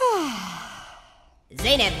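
A cartoon voice giving a long, breathy sigh that falls steeply in pitch and fades away over about a second.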